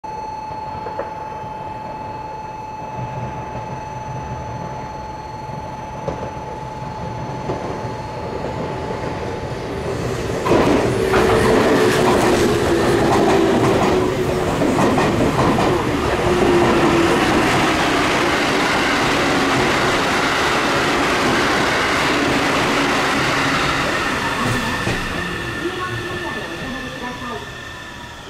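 Meitetsu 1700 series electric train coming by on the track. After a steady high tone, the train's noise and wheel clatter come up loud about ten seconds in, with a motor whine that falls slowly in pitch, then fade near the end.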